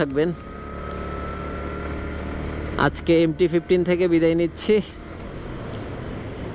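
Yamaha MT-15's 155 cc single-cylinder engine running steadily under way with a low drone, a faint whine rising slightly in pitch during the first two seconds as the bike gathers speed.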